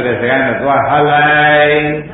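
Speech only: a Buddhist monk's voice giving a Burmese-language sermon, drawing a phrase out on one held pitch in a chant-like way.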